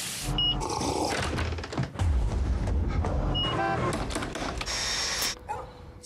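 Film soundtrack: a transit fare-card reader beeps twice, about three seconds apart, over a steady low rumble. A brief pitched sound follows the second beep.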